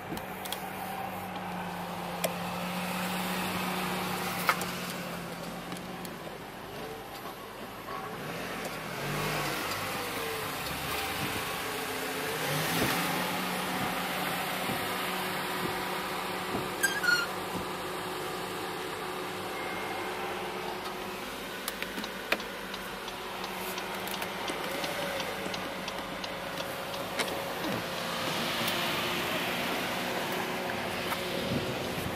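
Windshield wipers of a 2016 Honda Pilot sweeping back and forth over the glass, heard from inside the cabin: a whirring wiper motor that rises and falls with each sweep, with small clicks. A steady electric hum runs for the first few seconds.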